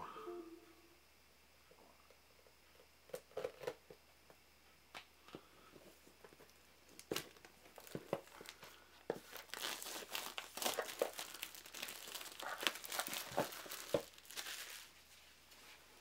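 Clear plastic shrink wrap being torn and peeled off a small cardboard game box, crinkling. It starts with a few scattered crackles, then turns into steady crinkling from about halfway through, dying down just before the end.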